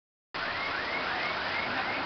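Street traffic on a wet road: a steady hiss of vehicles and tyres, starting about a third of a second in, with a faint rising chirp repeating about three times a second.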